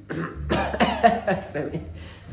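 A man coughing several times in short bursts, over a low hum.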